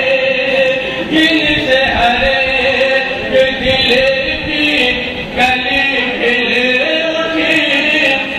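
Men's voices chanting an Urdu nazm (devotional poem) in long, held notes.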